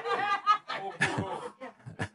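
A man chuckling in short, broken bursts of laughter.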